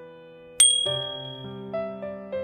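A single bright bell-like 'ding' about half a second in, ringing out and fading over a second, the notification-bell sound effect of a subscribe-button animation, over background piano music.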